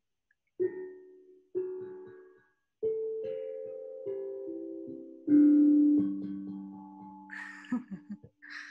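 Steel tongue drum struck with a mallet, playing a slow run of about eight single notes, each ringing on and fading. The strongest note comes a little past the middle.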